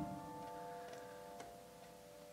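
Upright piano notes held and ringing out, fading steadily, with two faint clicks about a second and a second and a half in.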